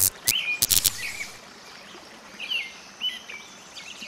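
Short bird chirps recurring every second or so, with a quick run of sharp clicks in the first second.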